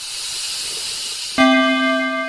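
Logo sting sound effect: a swelling whoosh of hiss, then about one and a half seconds in a sudden loud struck tone with several overtones that rings on and slowly fades.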